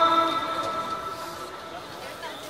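A man's call to prayer (adhan) over the mosque loudspeakers: a long held note ends and its echo dies away over about a second, leaving a faint murmur of a large crowd.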